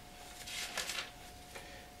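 Pages of a Bible being turned, a few short papery rustles, the loudest from about half a second to a second in.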